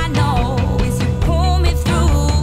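A woman's lead vocal singing lines that slide in pitch, over a live band with steady bass and drums.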